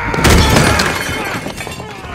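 A crash of objects breaking and clattering in a fistfight scene from a TV drama, loudest about a quarter second in and then tailing off. A man's drawn-out yell runs under the start of it.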